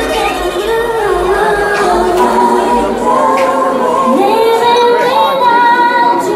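Loud singing over music, the voices holding long notes and gliding between pitches.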